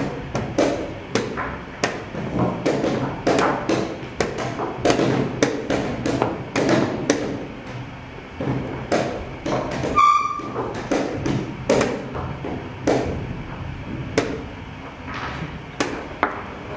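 Wooden chess pieces being set down and chess clock buttons being struck in quick succession in a blitz game, a sharp knock or click every second or so. A short electronic beep sounds about ten seconds in.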